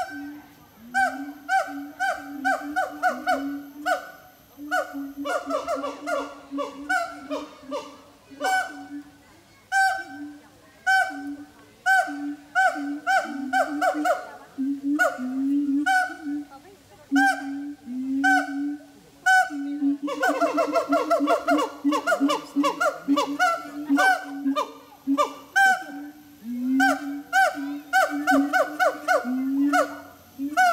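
Siamangs calling loudly as a group: a long run of honking hoots and barks, several a second, that quickens into a dense burst of rising calls about two-thirds of the way through.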